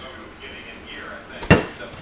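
A stainless steel mixing bowl set down on a kitchen countertop: one sharp metallic knock about one and a half seconds in, ringing briefly.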